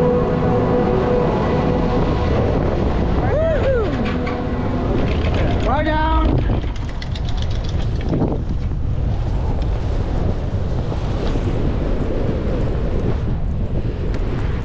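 Wind rushing over the microphone on a moving Doppelmayr detachable chairlift. A steady machine hum from the lift terminal fades out over the first few seconds. Two brief voice sounds come a few seconds in.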